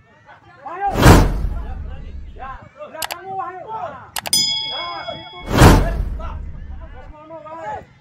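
Subscribe-button animation sound effects: a loud whoosh about a second in, a couple of quick mouse clicks, then a bell ding that rings for about a second, followed by a second whoosh.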